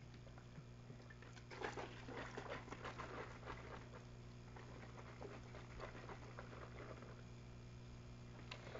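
Faint handling noises of a small bottle being worked in the hands: light rustles and clicks, busiest in the first half, over a steady low electrical hum.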